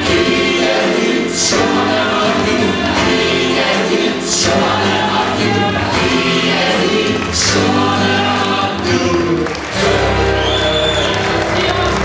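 A group of singers on microphones singing a song together over amplified backing music, with long held notes. Near the end the music settles into a deep, held chord.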